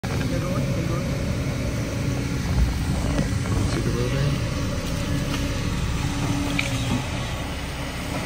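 Kobelco SK200 crawler excavator's diesel engine running steadily as it digs out brush, its pitch shifting slightly with the load.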